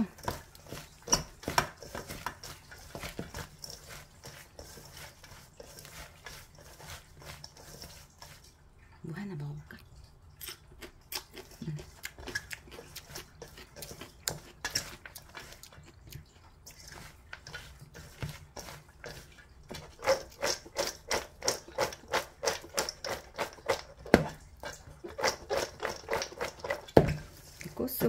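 Julienned Korean radish being tossed by hand with salt in a stainless steel bowl to wilt it: a string of crisp clicks and rustles that turns into a fast, steady run of clicks for the last several seconds.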